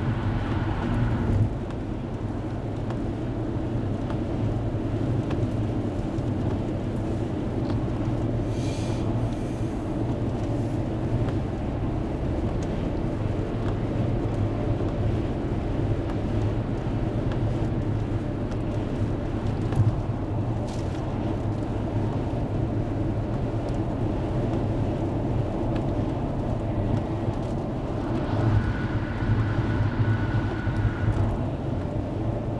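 Steady engine and tyre noise of a car driving at highway speed on a wet road, heard from inside the cabin as a continuous low rumble.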